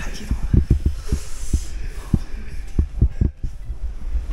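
A run of dull, low thumps, a dozen or so scattered unevenly over a few seconds, such as knocks or rubbing on a microphone or footsteps on a hard floor, with faint talk.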